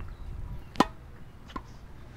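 A tennis ball struck once on a racket in a volley, a short sharp pop, followed about three quarters of a second later by a fainter tap.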